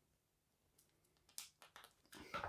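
Near silence, with a few faint short clicks and crinkles in the second half: a thumbnail picking at the plastic shrink-wrap on a deck of cards.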